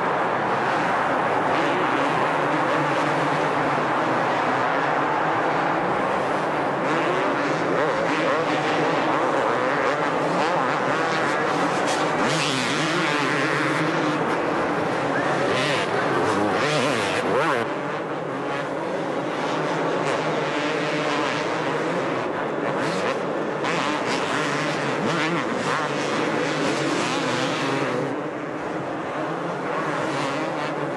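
Two-stroke supercross motorcycles racing on a dirt track, their engines revving up and down as the riders accelerate and back off.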